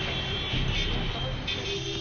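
Busy city road traffic noise of cars, buses and trucks, with background music over it.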